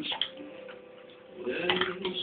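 A few faint ticks and clicks over a low steady hum, with a voice coming in near the end.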